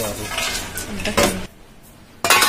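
Stainless steel bowl clattering and ringing as it is handled, with hard dried nuts rattling against the metal; the clatter stops about one and a half seconds in.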